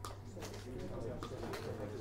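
Muffled, distant voice of a student asking a question across the classroom, over a steady low hum of the room.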